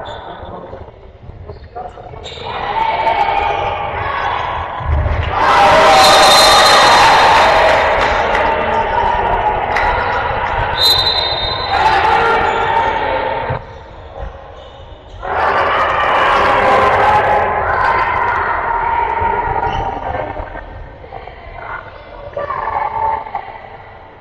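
Handball match play in an echoing sports hall: the ball bouncing on the court while players and spectators shout. A louder stretch of shouting and noise comes about five seconds in.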